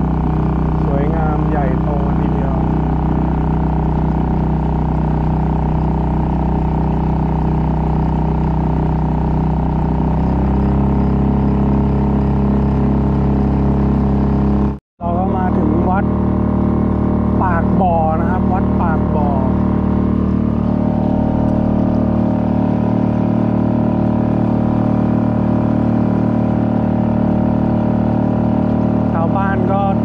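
Suzuki 2.5 hp outboard motor running steadily, pushing a small boat along at cruising speed. Its note rises a little about a third of the way in, and the sound drops out for a moment near the middle.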